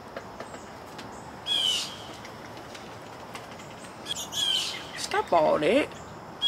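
Birds chirping and calling: one loud call about one and a half seconds in, then a quick run of chirps around four seconds in.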